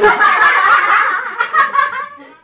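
People laughing loudly together, a dense run of overlapping laughter that eases off near the end.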